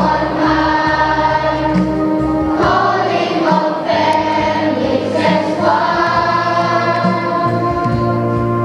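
A children's choir singing a church song together, the voices holding long sung notes.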